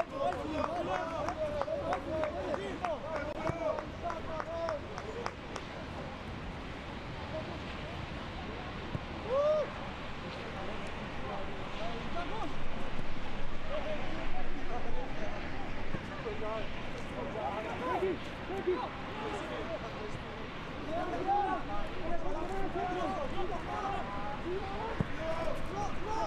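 Open-air sound of a football match: players and nearby spectators calling out and talking, with a run of sharp knocks in the first few seconds and one brief loud shout about nine seconds in.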